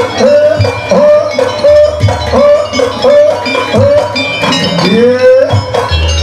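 Live Jaranan gamelan music: a lead melody of short repeated notes that slide up into pitch, with a longer rising swoop near the end, over regular drum strokes and the clink of metal gong-chimes.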